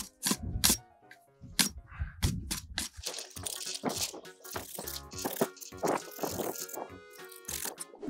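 Machete blade scraping along a thin wooden stick in repeated short strokes, shaving off its small thorns, under background music.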